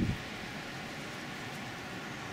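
Steady outdoor ambient noise: an even hiss with nothing standing out.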